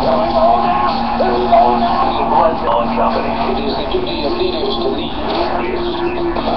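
A sports talk radio broadcast playing: music with indistinct voices over it.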